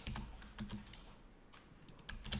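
Computer keyboard typing: several separate keystrokes, light clicks over a faint low hum.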